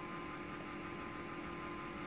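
Steady electrical hum over a low hiss: room tone.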